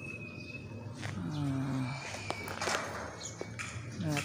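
Light knocks and taps on a building site, with a short voice call about halfway through and a thin, steady high whistling tone near the start.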